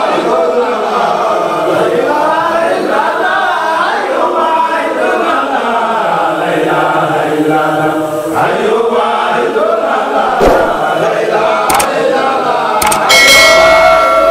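A group of men chanting together, a devotional mawlid chant in praise of the Prophet. A brief louder, higher-pitched sound cuts in near the end.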